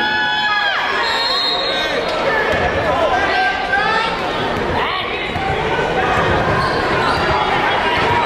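Basketball game play in an arena: sneakers squeaking on the court, with a short burst of squeaks at the start and again about three to four seconds in, over a steady hum of crowd voices.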